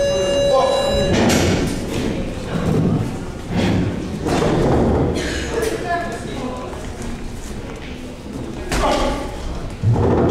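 A short bell-like ring at the very start as the round opens, then dull thuds from the boxers' gloved punches and footwork on the ring canvas, echoing in a large hall.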